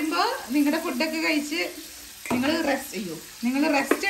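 Marinated chicken pieces sizzling as they fry in oil in a pan, under a high-pitched voice in short phrases. A sharp click sounds about halfway through and again near the end.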